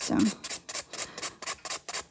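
Hand nail file of 100/180 grit rasping over a cured acrygel nail in quick short back-and-forth strokes, about four a second: surface filing of the sculpted nail.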